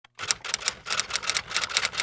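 Typewriter sound effect: a rapid run of key clacks, about seven a second, as text is typed out on screen.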